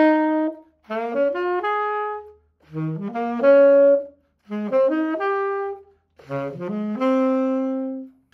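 Tenor saxophone playing ascending four-note seventh-chord arpeggios (root, third, fifth, seventh) through a jazz standard's chord changes. Each quick rising run ends on a held note, with a short breath between phrases, four runs in all after a held note at the start.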